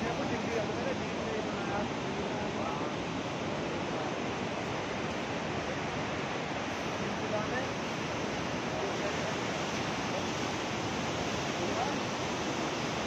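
Steady rushing of a fast, rock-strewn glacial mountain river, an even noise with no breaks.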